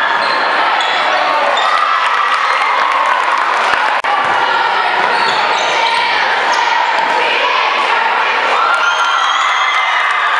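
Basketball game in a gym: the ball bouncing and sneakers squeaking on the hardwood court, under shouting from players and spectators that rings around the hall. A brief dropout about four seconds in.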